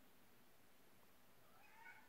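Near silence: faint room tone, with one faint short call near the end that rises and then falls in pitch.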